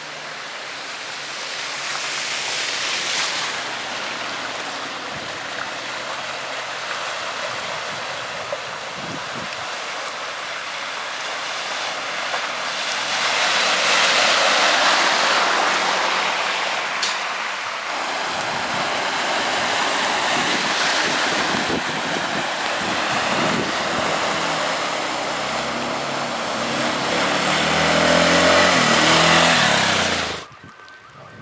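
Car tyres swishing through slush and meltwater as vehicles drive past one after another. The rushing swells as a car passes close about halfway through and again near the end, where a low engine rumble joins it.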